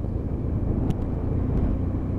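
BMW F800 motorcycle's parallel-twin engine running steadily under way, with road noise, as heard from the rider's helmet. A faint click about a second in.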